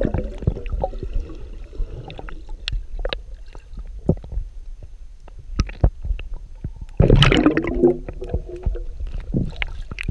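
Underwater sound through a submerged action camera: a muffled low rumble with scattered sharp clicks and crackles. A louder gurgling rush of water and bubbles comes about seven seconds in.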